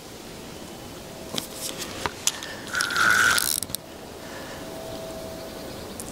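Fishing reel ratcheting under the pull of a hooked barbel. Scattered clicks start about a second in, then a louder steady buzz comes around three seconds in and cuts off just before four seconds.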